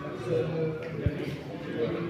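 Indistinct low voices in a large hall, with one short thud about a second in.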